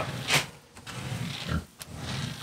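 A pig grunting low and intermittently by the feeder, with a brief sharp noise about a third of a second in.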